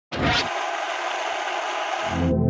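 Television-static hiss sound effect for an animated logo intro. It starts abruptly with a brief low rumble under it in the first half-second, then holds steady.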